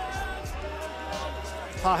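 Background music with a steady bass beat and sustained tones.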